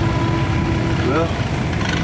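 An engine idles with a steady low rumble, and a faint steady tone sounds for about the first second.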